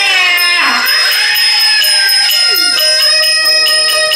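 Wanwanqiang shadow-play music: a high voice sings the young woman's line over a bowed fiddle. The music is punctuated by regular ringing strikes of the small brass bowl (wanwan).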